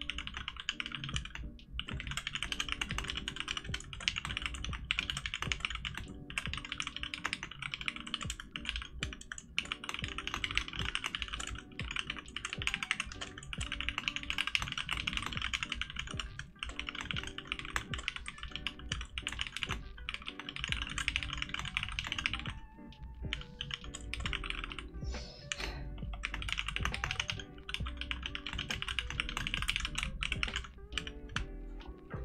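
Fast, continuous typing on a tenkeyless mechanical keyboard: a dense run of key clicks with only short pauses, one of them about three-quarters of the way through.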